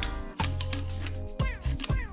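A utility knife blade scraping a paper label off a glass bottle in short strokes, with background music playing over it.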